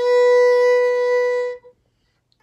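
Violin's open A string bowed as one long, steady note, held for about a second and a half and then stopped.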